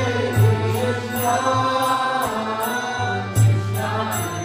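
Kirtan music: a harmonium sustains chords under chanted singing, a mridanga drum sounds deep strokes, and a high metallic clink keeps a steady beat about twice a second.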